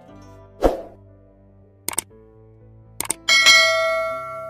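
Subscribe-button animation sound effects over soft background music: a thump, then two quick double clicks like a mouse clicking, then a bright notification-bell ding that rings on.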